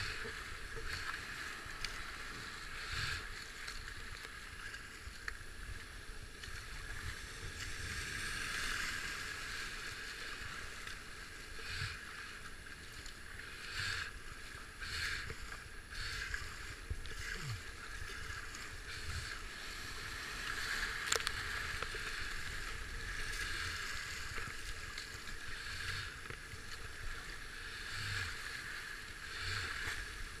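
Rushing white water of a river rapid heard from a kayak. Irregular splashes and slaps come every second or two as paddle strokes and waves hit the boat.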